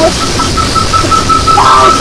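Power-electronics noise music: a dense wall of distorted noise under a steady high feedback whine that stutters into rapid pulses for about a second before holding steady again. A heavily processed voice comes in near the end.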